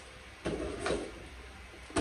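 Handling noises as a clear plastic gift box is picked up and moved: a rustle about half a second in and a light knock near the end.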